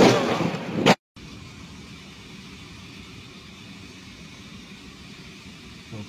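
A loud noisy rush that cuts off suddenly about a second in, then a steady faint hum of distant city traffic.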